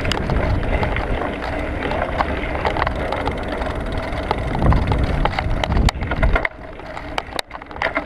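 A bicycle rolls along a tarmac lane: wind rumbles on the handlebar-mounted action camera's microphone over tyre noise, with scattered rattling clicks from the bike. The noise quietens for about a second near the end.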